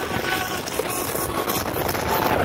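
Wind rushing over the phone's microphone together with the running noise of the Iron Dragon suspended roller coaster train in motion: a steady rushing sound with no distinct events.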